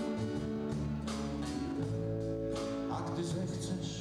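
Two acoustic guitars playing chords together, strummed live in an instrumental passage of a song.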